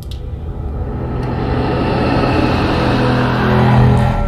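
Dark film score swelling: a low rumbling drone with held tones layered over it, growing steadily louder.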